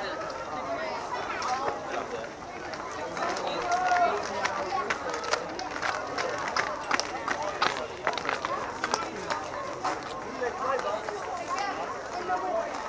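Indistinct talking by a few people, with scattered sharp clicks and taps, most frequent in the middle.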